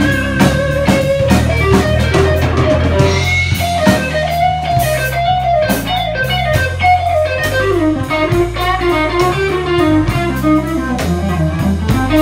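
Live blues band playing an instrumental passage: an electric Telecaster-style guitar plays a single-note lead line with bent notes over a low bass line and drums.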